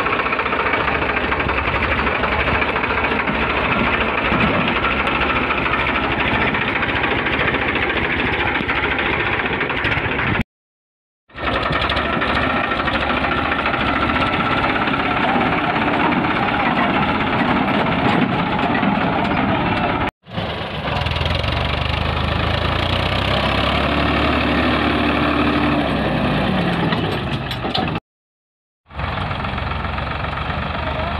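Farmtrac tractor's diesel engine running steadily and loudly while pulling a loaded trailer over rough ground. The sound breaks off abruptly three times where clips are spliced together.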